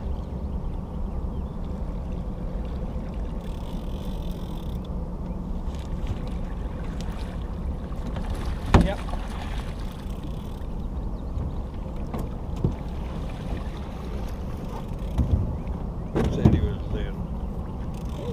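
Steady low wash of wind and water noise around a small aluminum boat, broken by a sharp knock about nine seconds in and a few shorter knocks and scuffles near the end.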